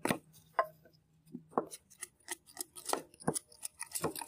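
A knife splitting a short length of bamboo into thin slats, with a run of sharp, irregular cracks and knocks, about one or two a second, as the blade is forced down the grain.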